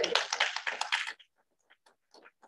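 A small group applauding, quick clapping that stops abruptly a little over a second in, followed by a few faint scattered taps.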